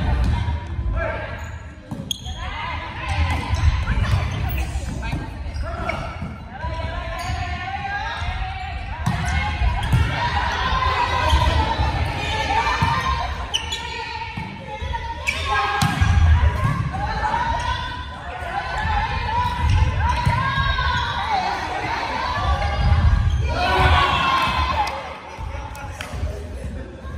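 Indoor volleyball rally: the ball is struck by hands and arms and thuds on the wooden gym floor, with players calling out, all echoing in a large hall.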